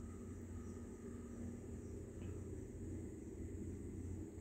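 Faint room tone: a steady low hum under a light, even hiss, with no distinct stirring strokes.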